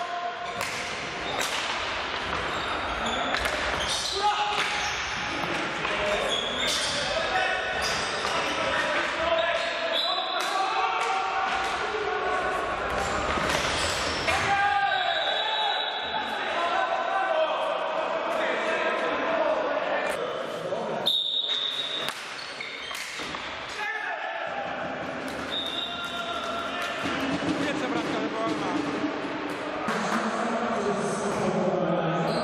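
Indoor field hockey in play in a sports hall: repeated sharp knocks of hockey sticks striking the ball and the ball hitting the wooden floor and boards, scattered irregularly, with players shouting to each other.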